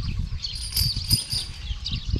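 Faint high chirping of small birds over a low, steady background rumble.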